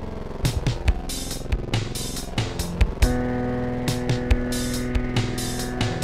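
Electronic shuffle drum beat looping, with a synthesizer played from a ROLI Seaboard RISE over it. About three seconds in, a held synth note comes in and sustains.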